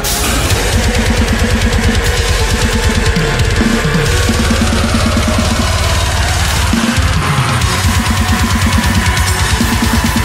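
Deathcore song with a full drum kit: a fast, even run of kick-drum strokes under crashing Meinl cymbals and heavy band music.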